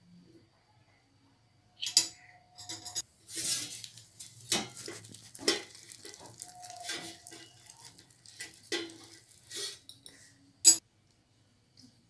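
Metal spoon and wire whisk clinking and scraping against a glass mixing bowl as thick cake batter is stirred, in an irregular string of knocks starting about two seconds in, with one sharp clink near the end.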